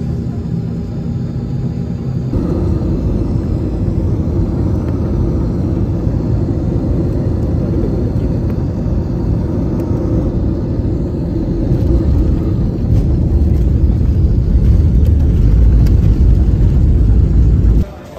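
Jet airliner cabin noise heard from a window seat: a steady engine hum for the first two seconds, then a louder, even rumble of engines and airflow in flight. The deep low rumble grows stronger towards the end.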